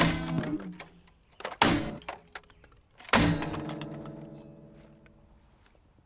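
A guitar smashed down onto a pile of stones three times. Its strings ring out in a chord that dies away after the first and last blows, the last ringing for about two seconds.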